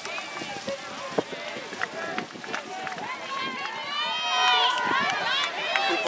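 Several players and spectators shouting and calling out at once on an open sports field. The yelling gets louder and higher a little past the middle. There is a single sharp knock about a second in.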